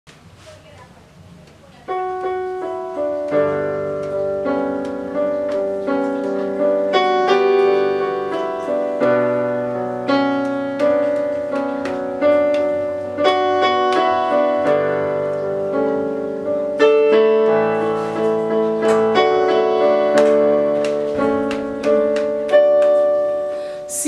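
Yamaha portable keyboard playing a slow gospel song introduction in held, piano-like chords. It comes in suddenly about two seconds in, with a new chord or note struck every second or so.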